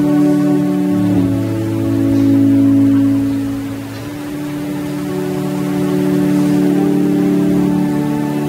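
Organ playing slow, long-held chords that change every few seconds.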